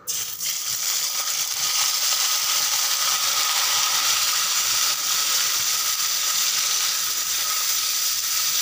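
Raw boneless chicken pieces dropped into hot oil in a karahi, sizzling. The hiss starts suddenly as the chicken goes in and then holds steady.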